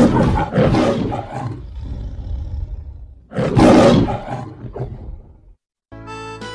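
Two loud roars in the manner of the MGM lion's logo roar. The first trails off over a couple of seconds, and the second comes about three and a half seconds in, fading out before the end.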